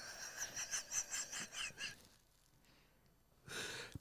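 A man's soft, breathy laughter: a run of short exhaled pulses, about four a second, dying away after about two seconds, with a faint breath near the end.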